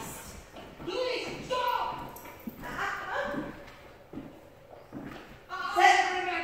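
A person talking in short phrases with pauses between them.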